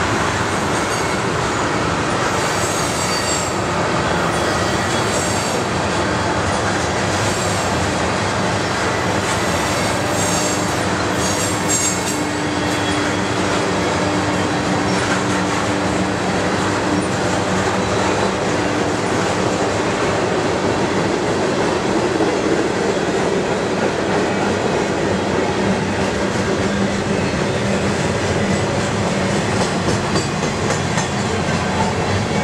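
Freight cars, tank cars and then gondolas, rolling slowly past: a steady rumble of steel wheels on rail, with intermittent high wheel squeals in roughly the first twelve seconds.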